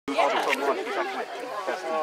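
Indistinct chatter of several overlapping voices, sideline spectators talking at a youth soccer game.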